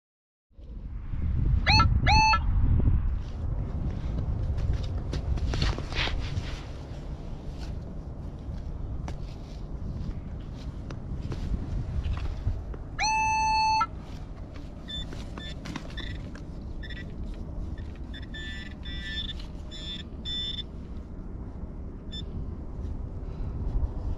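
Wind rumbling on the microphone, with electronic metal-detector target tones: two short rising beeps about two seconds in, a longer steady tone a little after the middle, then a run of rapid short beeps near the end as the target in the dug soil is pinpointed.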